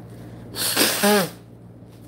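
A woman sneezes once, about half a second in: a sharp rush of breath that ends in a short voice sound falling in pitch.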